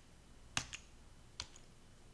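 Three faint, sharp clicks of computer keys: two close together about half a second in and one more about a second and a half in, over quiet room tone.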